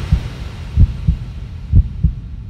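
Heartbeat sound effect: slow, low double thumps (lub-dub) repeating about once a second.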